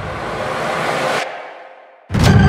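Whoosh sound effect of a trailer edit: a rush of noise that swells brighter, cuts off sharply a little past a second in, and leaves a low tail fading away.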